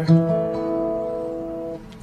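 Acoustic guitar in DADGAD tuning: a single A major chord strummed once and left to ring, fading slowly before it stops shortly before the end.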